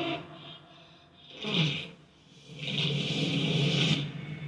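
Movie trailer soundtrack playing back: a short loud burst about a second and a half in, then a sustained sound building from about two and a half seconds to the end.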